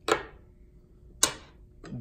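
Two sharp metal clinks a little over a second apart as the metal dial plate is lifted off the top of a DeZURIK valve's shaft, metal striking metal.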